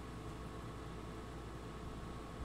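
Steady background hiss and low hum of room tone with faint steady tones, unchanging throughout, with no distinct events.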